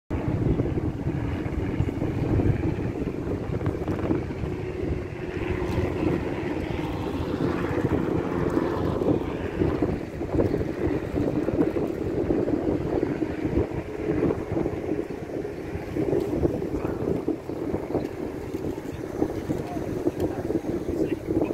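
Wind buffeting a handheld phone microphone, a steady rumble, with a murmur of people's voices in the background.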